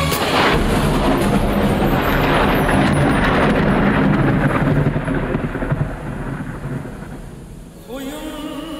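Audience applause with cheering, loud for about five seconds, then dying away.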